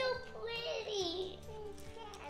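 A young child's voice in a drawn-out, sung exclamation that slides down in pitch over the first second and a half, over background music.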